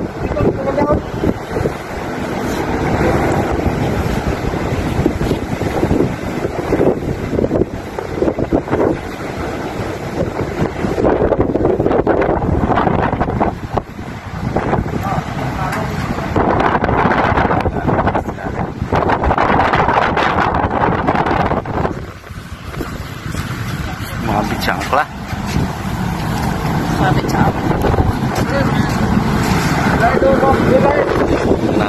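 Wind buffeting the microphone in a steady loud rumble, with bits of crew voices coming through at times.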